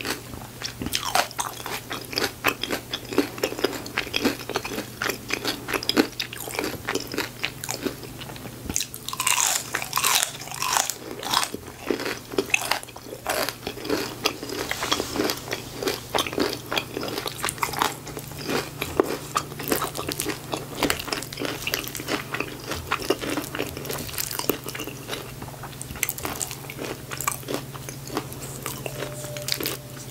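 Close-miked eating of a crispy battered onion ring: crunching bites and chewing, in an irregular run of crisp cracks.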